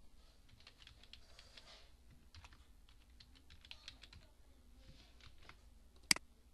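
Faint computer keyboard keystrokes: an irregular run of key taps as a password is typed, over a low steady hum.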